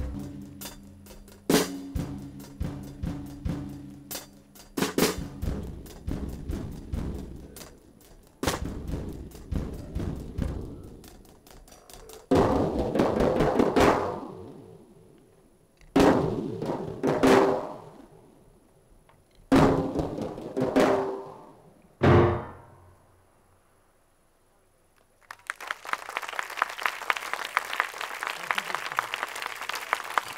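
Live jazz ensemble of grand piano and drum kit playing dense struck chords and drum hits, then several loud separate hits that ring out and die away: the close of a piece. After a brief silence, audience applause starts about 25 seconds in.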